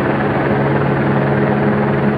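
A helicopter's rotor beating steadily and loudly overhead.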